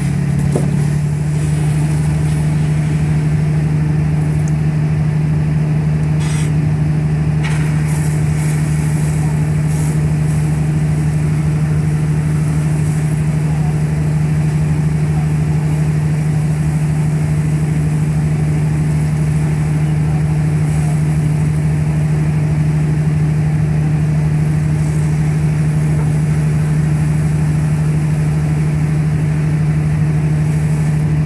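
A fire engine's diesel engine running steadily at the scene of a car fire, a loud, even hum that settles to a lower pitch in the first second.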